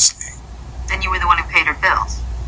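Dialogue only: a person speaking in a TV scene, over a steady low hum, with the thin sound of a television speaker recorded off the set.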